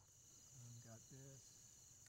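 Near silence with a faint, steady, high-pitched chirring of insects that starts and stops abruptly, and a faint spoken word in the middle.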